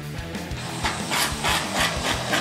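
Aerosol can of whipped cream spraying in a series of short hissing spurts, about three a second, starting about a second in.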